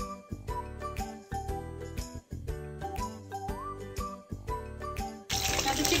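Light instrumental background music with chiming, bell-like notes over a steady beat. Near the end it cuts suddenly to chicken pieces sizzling as they deep-fry in hot oil in a wok.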